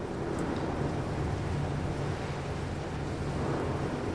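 Rumble of an Atlas V rocket's RD-180 engine during ascent, a steady low noise that swells slightly in the first second and then holds.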